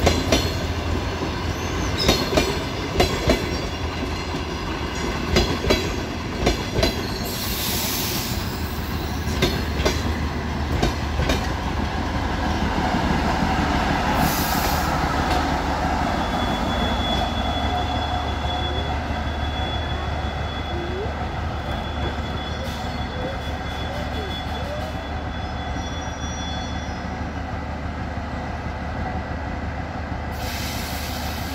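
DR1A diesel multiple unit rolling slowly into the station, its wheels clacking over rail joints again and again for the first ten seconds or so over a constant low diesel drone. Later a thin high squeal runs for several seconds as the train brakes to a stop.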